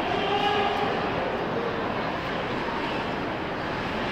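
Ice hockey arena ambience heard through the rink-side glass: a steady wash of crowd noise and play on the ice, with a faint voice rising briefly out of it in the first second.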